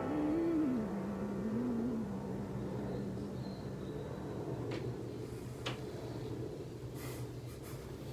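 The end of a slow piano-and-voice ballad: a last sung note bends and wavers for about two seconds, then the piano's low chord rings on and slowly dies away. A few faint clicks come in the second half.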